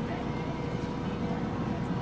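Pit Boss vertical pellet smoker running with its door open: a steady low fan hum, with wind buffeting the microphone.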